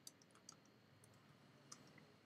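Faint clicks of typing on a computer keyboard: a quick, uneven run of keystrokes over near silence.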